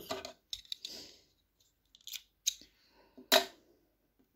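Handling noises from working a needle, yarn and a crocheted doll head at a table: a few short clicks with a brief rustle, the loudest click just past three seconds in.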